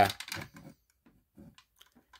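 A few faint clicks and handling rustles from a Simplex break-glass fire alarm pull station being turned over in the hands, with near silence between them.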